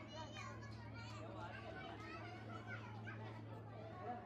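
Background chatter of shoppers, including children's voices, over a steady low hum.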